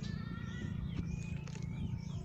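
Bolo knife chopping into a felled coconut palm trunk, a few dull strokes, while thin high animal calls sound over a steady low hum.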